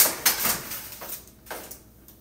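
A foil-lined metal baking pan set down on an electric range top: a sharp clatter at the start with crinkling foil, then quieter rustling and a faint click.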